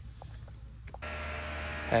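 Steady running hum inside a vehicle cabin, cutting in about a second in, after a moment of faint outdoor background with a few soft clicks.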